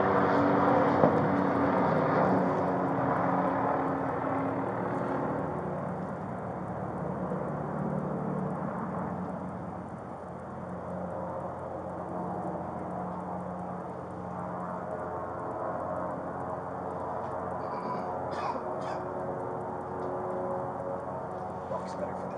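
An engine running steadily, gradually fading over the first ten seconds or so, with a few faint clicks near the end.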